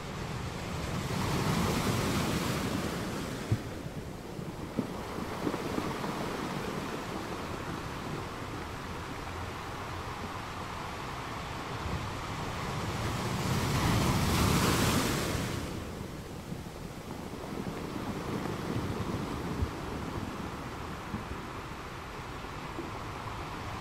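Ocean surf on a beach soundscape: two waves surge in and wash out, the first a second or two in and the second about thirteen seconds in, over a steady wash of surf.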